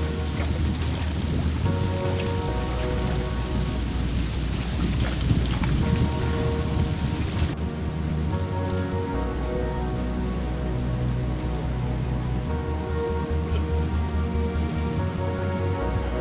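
Background music of slow, held chords over a low bass. A rushing noise lies under it for the first half and cuts off suddenly about seven and a half seconds in.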